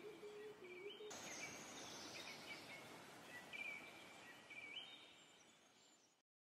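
Near quiet, with faint high bird chirps repeating every second or so over a light background hiss.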